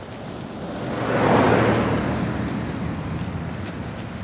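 A road vehicle passing close by on the highway: its tyre and engine noise swells to a peak about a second and a half in, then fades slowly away.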